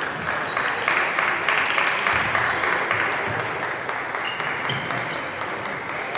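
Applause echoing in a large hall, loudest in the first few seconds and fading, over scattered sharp clicks of table tennis balls and brief high squeaks.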